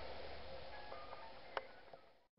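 Quiet room noise that slowly fades away, with a few faint short tones and one sharp click about one and a half seconds in.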